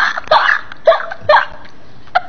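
A woman laughing hard in short, breathy, gasping peals, about four in quick succession.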